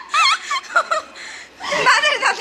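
Laughter in short, quick bursts: one run in the first second, a pause, and another brief run near the end.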